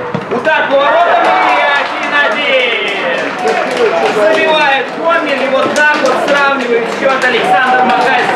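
Men's voices shouting excitedly as a free-kick goal goes in to level the score.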